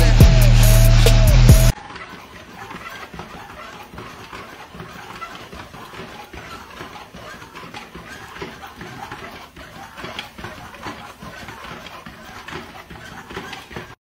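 Loud music for the first couple of seconds, cutting off abruptly; then a Doberman's paws trotting on a Firepaw slatmill, a faint, fast, irregular patter of soft clicks from the slats.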